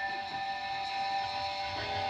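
Quiet opening of a rock song: electric guitar holding sustained, ringing notes, with no drums yet.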